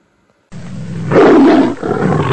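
A loud roar like a big cat's, used as a sound effect, cutting in suddenly about half a second in. It is loudest between one and one and a half seconds, dips briefly, then carries on.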